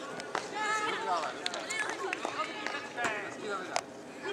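Young footballers' voices shouting and calling to each other across the pitch, with a few sharp knocks in between.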